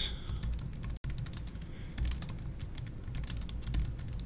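Fast typing on a computer keyboard: a dense, uneven run of key clicks, with the sound cutting out for an instant about a second in.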